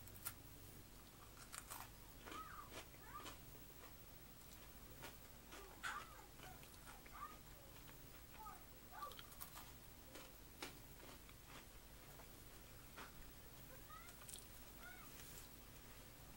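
Faint chewing of a dark-chocolate-coated pretzel snap, with scattered quiet crunches and mouth clicks.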